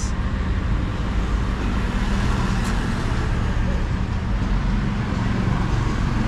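Street traffic: vehicle engines running, a steady low hum under general road noise.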